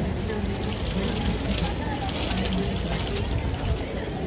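Busy city street ambience: the murmur of passers-by's voices over a steady low rumble of traffic and outdoor noise.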